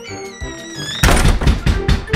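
Cartoon background music; about a second in it turns suddenly much louder, with a quick run of heavy thuds.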